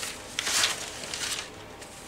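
Brown pattern paper rustling and sliding as cut paper panels are handled, with a light tap about half a second in; it dies down after about a second and a half.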